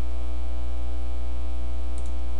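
Steady, loud electrical mains hum with a faint buzz above it, unchanging throughout, carried on the narration's recording.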